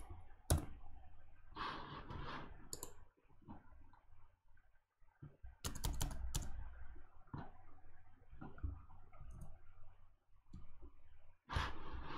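Scattered clicks and taps on a computer keyboard, a few at a time with pauses between.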